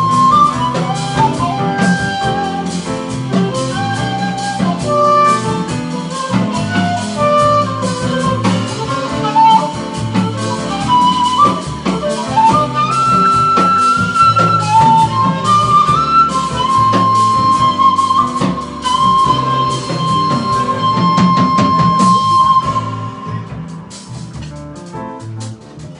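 Shakuhachi playing a jazz melody over piano, bass and drums, the phrase closing on a long held note for the last several seconds. Near the end the band drops away and the sound gets quieter.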